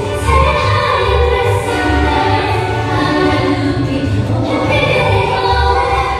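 A group of singers, men and women, singing a song together in harmony over a backing track with a steady bass beat.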